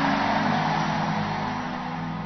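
A sustained low keyboard chord held steady under the noise of a large praying congregation, the whole slowly fading.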